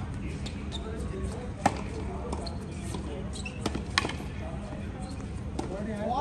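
Tennis ball being played: a few sharp pops of racket strikes and court bounces, a second or two apart, with the loudest about one and a half seconds in. Faint voices are heard in the background.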